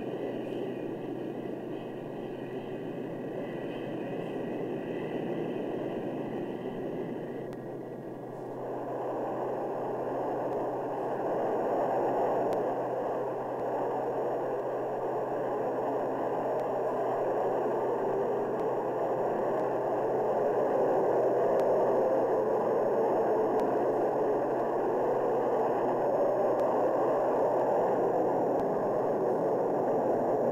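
Grumman F-14A's twin Pratt & Whitney TF30 turbofan engines running on a takeoff roll and climb-out, a steady jet noise that grows louder and fuller about eight seconds in.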